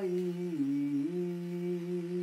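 An elderly man singing Punjabi Sufi verse, holding one long note. A little after half a second in, the note dips lower for about half a second, then returns to the held pitch.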